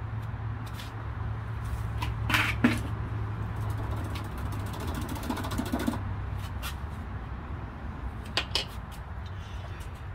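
A low steady hum under a few sharp clicks and knocks, the clatter of painting tools and materials being handled, most of it about two and a half seconds in and again near the end.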